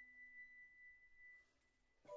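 Near silence: the faint tail of a single ringing glass-harp note from the background music, dying away about one and a half seconds in.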